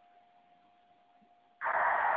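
Faint steady tone, then about one and a half seconds in a loud, harsh hiss starts: D-Star digital (GMSK) data coming out of an FM radio's speaker, which sounds like D-Star over FM because the node is set up wrong.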